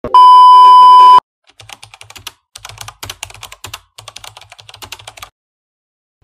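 A loud, steady, high test-tone beep of the kind played over TV colour bars, lasting about a second. After a short gap comes a run of rapid keyboard-typing clicks for about four seconds, used as an edited sound effect.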